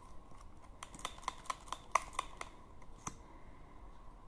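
A quick run of about ten light, sharp clicks and taps over two seconds, from small plastic things being handled close to the microphone.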